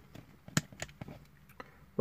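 A few faint, sharp clicks of a plastic Transformers action figure's joints as its arms are folded back during transformation, the clearest a little past halfway.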